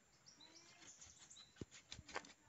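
Near silence, with faint short bird chirps in the background and a few soft clicks and a low thump near the end.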